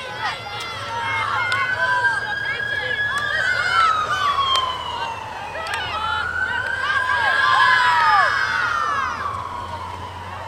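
A siren wailing, its pitch rising and falling slowly about every four to five seconds, over short shouts and calls from voices.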